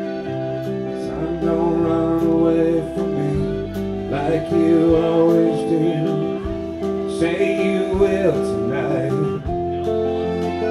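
Live band playing a song: guitars with drums, and a voice singing lines about halfway through and again near the end.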